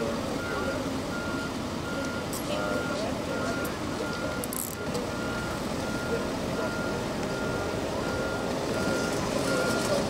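A vehicle's reversing alarm beeping steadily, a little faster than once a second, over the murmur of voices and running engines.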